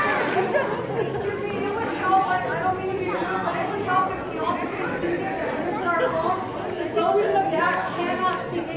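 Many people talking at once: the general chatter of an audience between performances, with no one voice standing out.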